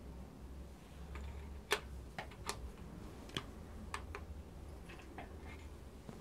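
Light metallic clicks and taps from a BMW M52TU connecting-rod bearing cap and its parts being handled and fitted onto the crankshaft: about a dozen short, scattered clicks.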